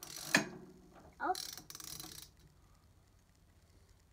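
Socket ratchet wrench clicking in two short runs as it is turned to tighten a wheel's axle bolt, with a child's brief "oh" between them.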